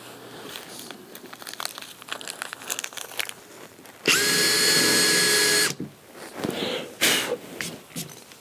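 Makita cordless drill spinning a countersink bit into plywood, a steady whine lasting about a second and a half that starts and stops abruptly. It is cutting a countersunk recess so a screw head will sit flush. Light clicks come before it.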